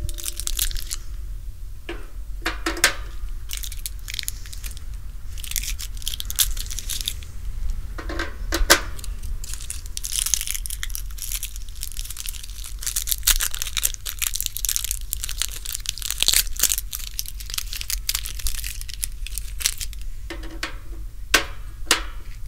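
AA batteries being pressed into the plastic battery compartment on the underside of a battery-fan smokeless charcoal grill: scattered small clicks and knocks, with a stretch of rustling in the middle, over a steady low rumble.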